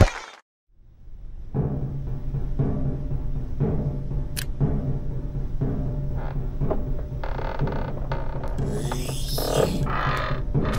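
After a second of near silence, a dark, suspenseful cartoon music score sets in: a steady low drone with soft low drum beats about once a second, and a swell building from about seven seconds in.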